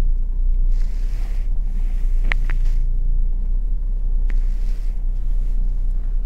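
Car engine running at low speed as the car reverses slowly, heard from inside the cabin as a steady low rumble, with a few faint clicks.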